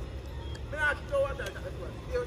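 Men's voices shouting on the pitch, two short calls about a second in, over a low steady rumble.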